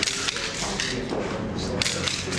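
Press cameras clicking in quick, sharp bursts, with a murmur of voices underneath.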